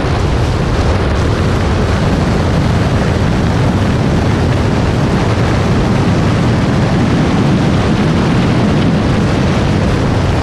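Steady, loud wind rumble on a camera mounted outside a moving car, mixed with road noise.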